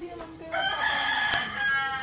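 A rooster crowing: one long call that starts about half a second in and runs on for about a second and a half.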